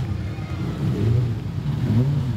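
Dirt-track modified sedan's engine running at low revs as the car rolls slowly, its low note wavering a little up and down.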